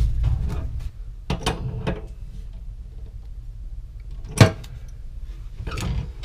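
Steel wrench on the brass flare fitting of a gas supply hose: a low rumble of handling, then a few sharp metallic clicks and clanks as the flare nut is snugged up, the loudest about four seconds in.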